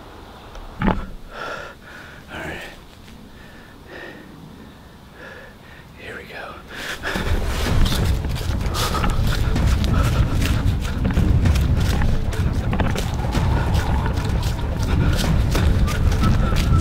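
A person breathing hard with gasps, with a single thud about a second in. From about seven seconds in he breaks into a run on a leaf-covered woodland path: rapid footfalls crunching dry leaves, the handheld camera jostling and wind buffeting the microphone.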